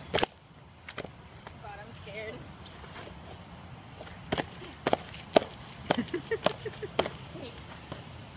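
Faint background voices with a string of sharp clicks, about two a second, in the second half.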